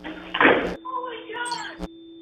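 Network ident sting: a loud noisy burst like a slam, then a brief voice and a sharp click over a faint steady tone.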